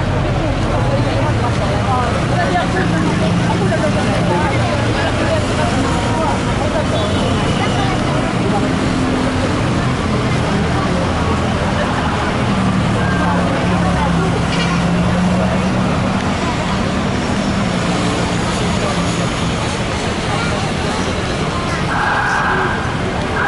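Busy road traffic passing steadily close by, a constant noise of engines and tyres with a low engine hum that rises and falls, mixed with indistinct voices of people talking.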